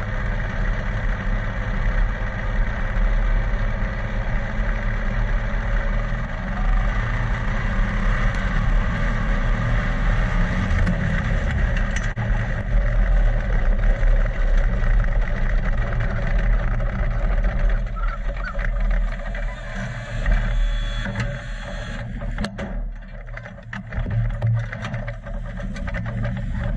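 Speedcar engine heard from the onboard camera, running steadily with a dense mechanical sound. About two-thirds through it settles lower and thinner. Near the end there are scattered knocks and rattles as the driver climbs out of the cockpit.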